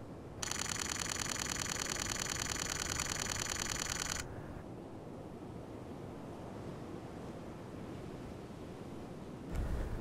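Nikon Z9 camera firing a rapid continuous burst for nearly four seconds, a fast even run of shutter clicks, then stopping, leaving only faint wind and outdoor ambience.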